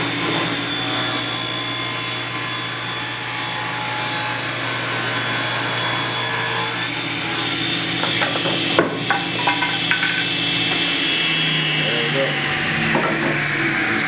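Table saw running and ripping a wooden board lengthwise, the board fed past the blade with a push block. The motor gives a steady hum under the cutting noise, with a few sharp knocks about eight to ten seconds in.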